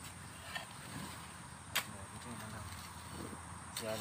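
A metal hoe chopping into hard, compacted soil: one sharp strike a little under two seconds in.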